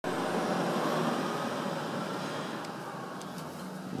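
Steady rushing background noise that slowly grows fainter, with a few faint clicks in the second half.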